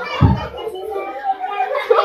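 Children's voices: a small child speaking softly amid other children's chatter, with one low thump about a quarter-second in.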